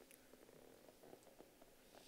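Near silence: room tone with a few faint, soft clicks.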